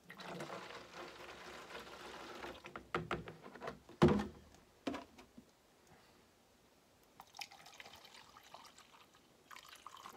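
Antifreeze, with rinsed-out liquid latex, poured from a plastic measuring cup into a plastic gallon jug: a steady splashing pour for about two and a half seconds. Then a few plastic knocks and one loud thunk about four seconds in as the containers are handled and set down, and a fainter pour into the measuring cup near the end.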